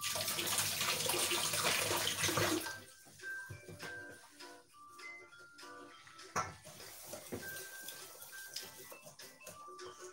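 Water running from a tap for about three seconds, then shut off. Soft background music plays under it, with a single knock about six seconds in.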